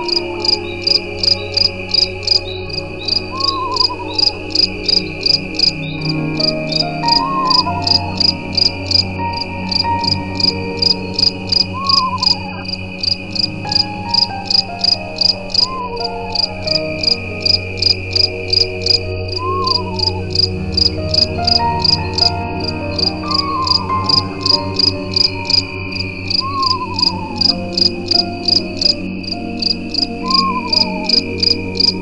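Crickets chirping in an even pulse of about two chirps a second over a continuous high insect trill, with low sustained drone tones underneath and a short falling tone repeating every few seconds.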